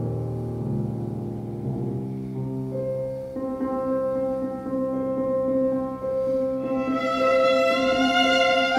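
Violin and grand piano playing a slow, lamenting Spanish melody. The violin holds long low notes at first, then moves higher from about three seconds in over evenly repeated piano chords, growing brighter and louder near the end.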